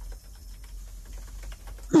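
Faint, irregular light clicks over a low steady hum, with a voice starting at the very end.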